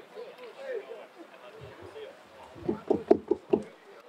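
A handheld microphone being handled at the lectern: a quick run of about six loud, dull thumps picked up through the mic, starting about two and a half seconds in, over low murmuring chatter.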